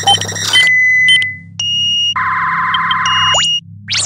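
Synthesized electronic sound effects for an animated title graphic. A steady low synth drone runs under a string of short high beeps and held tones. A fast warbling buzz fills the second half, and a quick rising sweep comes near the end.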